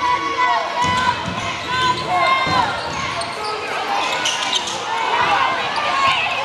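Basketball dribbled on a hardwood gym floor, a few low bounces about a second apart, with sneakers squeaking on the court and spectators talking.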